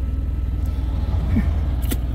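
Idling semi-truck diesel engine, a steady low rumble, with highway traffic going by.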